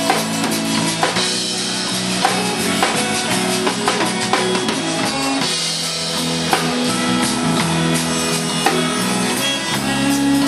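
Live zydeco band playing a slow instrumental passage, with drum kit and guitar. The drums mark a slow, even beat about once a second under sustained chords.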